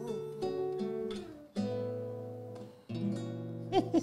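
Acoustic guitar played alone between sung lines: chords struck about every second and a half and left to ring and fade. A voice slides in just before the end as the singing resumes.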